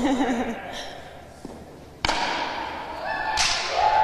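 Wooden pala paddle striking a hard pelota ball: a sharp crack about two seconds in that echoes around the walled fronton court, then a second crack about a second later as the ball hits the wall.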